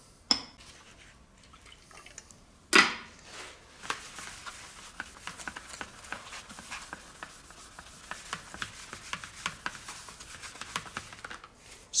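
Shop towel wet with glue remover being rubbed back and forth over a plastic panel to lift old sticker residue: a dense run of small scuffs and ticks. There is a single sharp knock about three seconds in.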